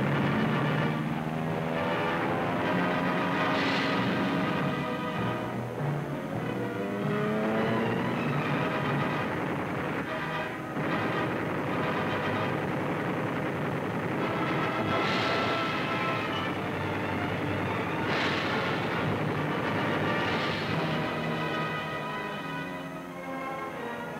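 Orchestral film score playing over a dense roar of noise that swells several times: about four seconds in, and three more times later on.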